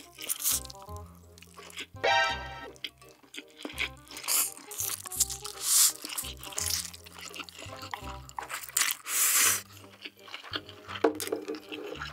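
Several loud slurps of instant noodles and chewing, over background music with a steady bass line.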